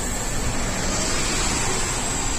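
Single-deck city bus driving past at close range: a loud, steady rush of engine and tyre noise.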